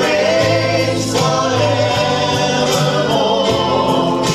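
Gospel worship music: a choir singing long held notes over instrumental accompaniment, with occasional percussion strokes.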